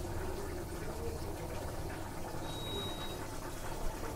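Low, steady bubbling and hiss of mutton cooking down in oil in a pot on the stove, with a brief thin high tone a little past halfway.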